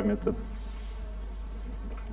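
Pause in a man's speech: a steady low hum with faint background hiss, after the tail of a spoken word at the very start.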